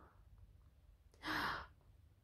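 A woman's single short, breathy sigh of admiration, about a second in; otherwise quiet room tone.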